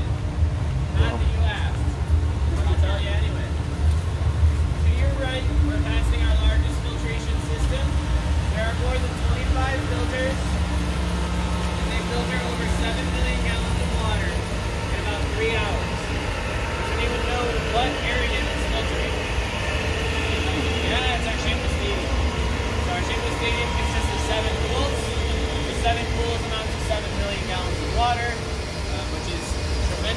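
Electric-motor-driven water pumps of an aquarium filtration plant running with a steady low rumble and hum, with people talking in the background.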